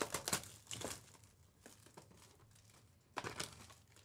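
Plastic shrink wrap on a sealed baseball-card box crinkling and tearing as it is stripped off by hand, in short bursts: near the start, about a second in, and again a little after three seconds.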